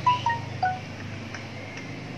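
Chime-like tinkling: several short, clear notes at different pitches, bunched in the first second.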